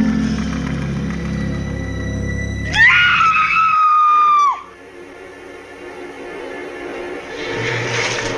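Horror film score with low sustained drones. About three seconds in, a loud high-pitched scream rises, holds for nearly two seconds and breaks off. Quieter, tense music follows.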